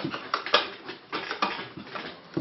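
About half a dozen light, irregular clicks and knocks of handling noise.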